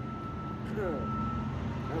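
Steady low hum of a heavy vehicle's engine running in street traffic.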